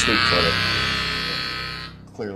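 Inductive amplifier held up to a lit table lamp, giving a loud electrical buzz as it picks up the magnetic field of the lamp's live circuit; the buzz cuts off near the end.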